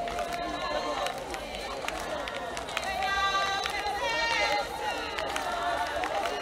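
A group of women singing and chanting in high voices, with feet stamping and ankle rattles shaking as they dance.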